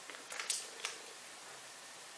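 Foil and paper wrapper of a milk chocolate bar crinkling as it is handled and opened: a few short, sharp crinkles and clicks in the first second.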